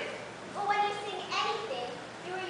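A young performer's voice from the stage in two short phrases.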